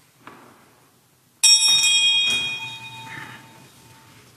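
Sacristy bell struck once about a second and a half in, ringing with several high tones and one lower tone that fade away over about two seconds, signalling the start of Mass as the priest enters. A faint knock comes just after the start.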